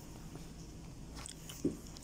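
Faint steady low hum, with a small click just past the middle and a brief mouth sound near the end.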